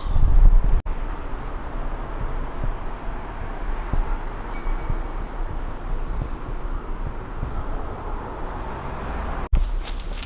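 Steady outdoor background noise with no distinct events, with a faint brief high tone about halfway through.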